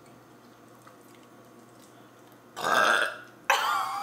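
A person burps loudly about two and a half seconds in, and a second loud, voiced sound follows near the end.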